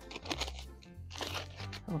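Plastic foil booster pack of trading cards crinkling and crunching as it is torn open and handled, over quiet background music.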